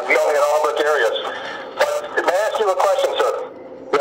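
A man's speech over a phone call, heard through the phone's speaker, stopping a little before the end.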